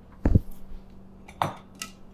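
Two knocks of kitchenware as a spatula and bowls are handled at a food processor's stainless-steel bowl, a little over a second apart, the first the louder, with a light click after the second.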